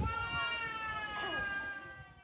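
A long, drawn-out, meow-like animal call, held for about two seconds and falling slightly in pitch.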